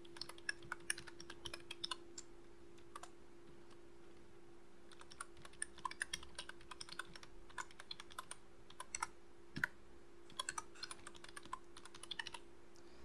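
Faint computer keyboard typing: quick runs of keystrokes with a pause of about two seconds near the start, over a low steady hum.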